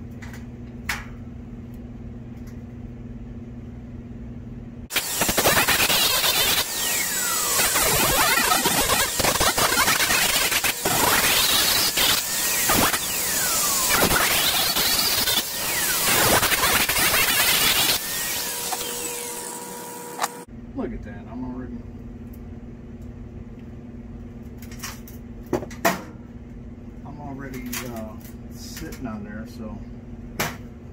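Electric angle grinder with a sanding disc starting up about five seconds in and grinding a green cedar branch, its whine shifting in pitch as the disc is pressed into the wood. It cuts off suddenly after about fifteen seconds, leaving a low steady hum and a few handling clicks.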